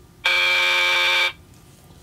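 Wrong-answer buzzer sound effect: one flat, steady buzz lasting about a second, marking an incorrect guess.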